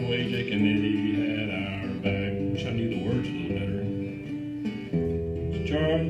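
Acoustic guitar playing the accompaniment of a live folk song, with a change of chord about five seconds in.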